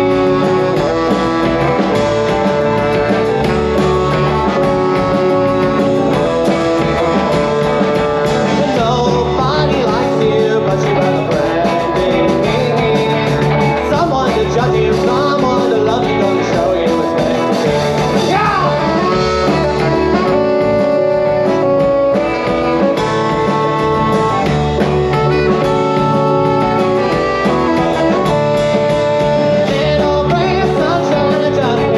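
A live rock band playing a song, loud and steady: electric guitar, bass and drum kit with singing over them.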